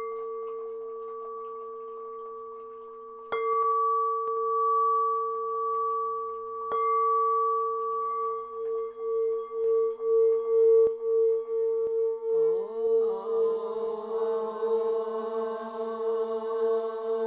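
Singing bowl struck twice, ringing on in a steady tone that begins to pulse in a slow beat. Voices chanting join in about three-quarters of the way through.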